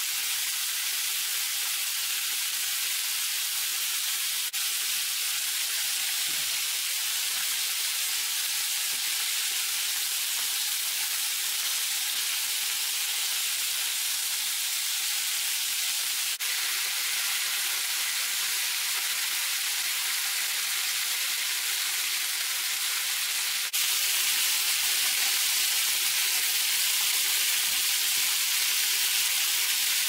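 Pork ribs frying in oil in a pan: a steady sizzle that gets a little louder for the last several seconds.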